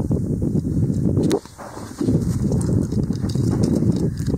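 Wind buffeting the microphone: a low, uneven rumble that drops away for about half a second near the middle, then returns, with a single sharp click just before the drop.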